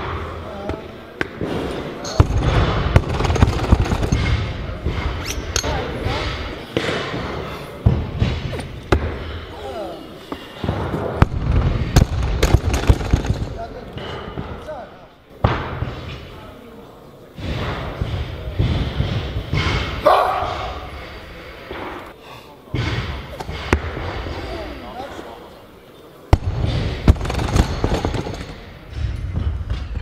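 Weightlifting training-hall ambience: voices talking in a large echoing hall, broken by repeated sharp thuds and clanks of Eleiko bumper-plate barbells being dropped and set down on lifting platforms. The sound cuts abruptly to a new scene every few seconds.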